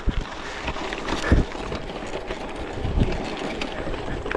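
Gravel bike tyres crunching and slipping over loose gravel on a steep climb, with wind on the microphone and a couple of low thumps, about a second in and near three seconds.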